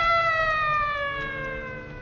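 A single long instrumental note in an old Hindi film song, gliding slowly downward in pitch and fading, as a fill between two sung lines.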